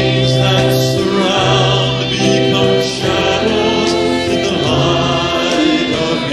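A group of voices singing a slow worship song together in a live recording, in long held notes that change every second or two.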